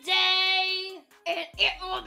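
A high voice holds one long sung note for about a second, then breaks into a few short syllables.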